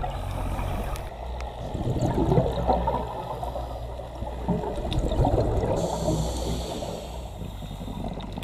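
Underwater ambience picked up through a camera housing: water gurgling and rushing, swelling twice.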